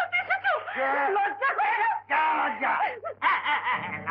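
Dialogue only: a woman speaking in a raised, reproachful voice, over a faint steady low hum from the old film soundtrack.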